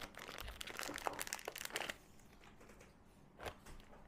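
Thin plastic packaging crinkling and crackling as it is handled and opened, busiest in the first two seconds, then a few faint clicks.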